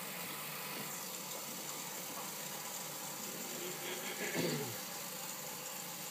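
Bathroom sink faucet running steadily, its stream of water falling into the basin, with one brief vocal sound about four and a half seconds in.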